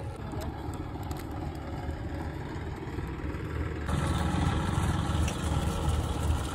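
Steady low rumble of wind buffeting the microphone, becoming louder about four seconds in.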